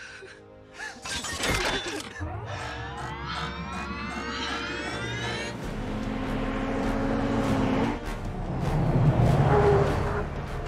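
Film soundtrack of music score with a rising whine building for a few seconds, then the low rumble of a column of military trucks driving up, loudest near the end.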